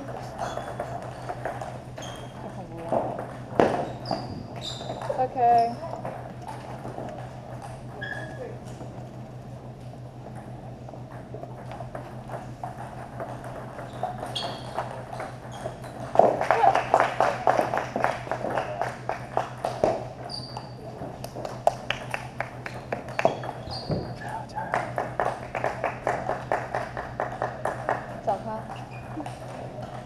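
Table tennis ball clicking off paddles and bouncing on the table in rallies, in quick runs of sharp ticks that are busiest about halfway through and again near the end.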